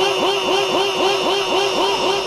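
A public-address system's echo effect repeating the tail of a shouted syllable over and over, about five times a second, each repeat a short upward swoop in pitch that then holds, slowly fading.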